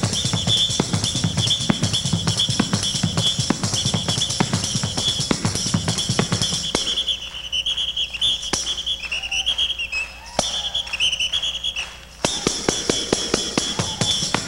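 Tambourine played by hand as a solo: fast, steady strokes with ringing jingles. About seven seconds in it thins out to sparse hits with the jingle ring wavering in pitch, and the full rhythm comes back near the end.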